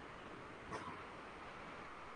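Quiet room tone: a faint, steady hiss from the recording setup, broken by one brief faint sound a little under a second in.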